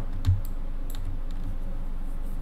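A few light, irregular clicks from a computer keyboard and mouse, with a soft thump about a third of a second in.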